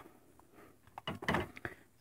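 A radio scanner's received transmission cuts off with a click right at the start, leaving near quiet broken by a few faint knocks and clicks as the radios are handled.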